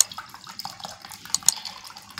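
Water poured from a plastic bottle into an aluminium pot of sharbat and ice cubes, splashing steadily, with a few sharp clinks as ice and a steel ladle knock in the pot.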